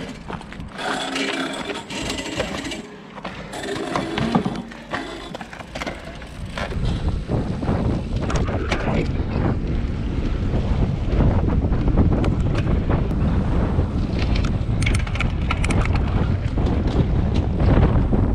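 Wind buffeting the microphone and tyres rumbling on asphalt as the camera moves along with cargo bikes, steady and fairly loud from about six seconds in. The first few seconds hold scattered knocks and clatter.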